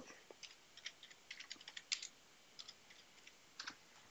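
Faint keystrokes on a computer keyboard: a quick, irregular run of taps as a short terminal command is typed.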